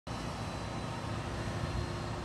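Steady outdoor background noise with a low rumble and a faint steady hum underneath.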